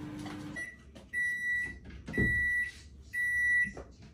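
Microwave oven finishing its cycle: the running hum cuts off about half a second in, then it beeps three times, long high beeps about a second apart, signalling that the heating is done. A soft knock comes during the second beep.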